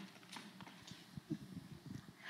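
Faint, irregular taps and clicks in a quiet hall, a few light knocks spread unevenly across the two seconds.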